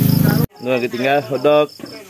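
Crickets chirping in a steady pulsing trill, a few pulses a second, under talking voices. A low steady buzz cuts off abruptly about half a second in.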